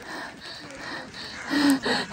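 A woman's audible breathing over a soft hiss, then a short voiced sound from her about a second and a half in.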